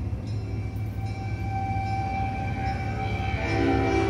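Small live ensemble playing a quiet, slow passage of contemporary concert music: a steady low drone under a long held high note, with lower sustained tones joining near the end.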